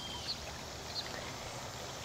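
Steady outdoor background noise with a few faint, short, high chirps.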